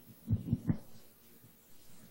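Handling noise on a live microphone: three quick, low thumps about a fifth of a second apart as the mic is gripped and worked free of its stand.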